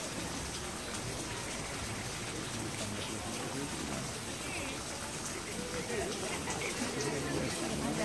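Faint, indistinct voices over a steady wash of open-air noise from wind and the water.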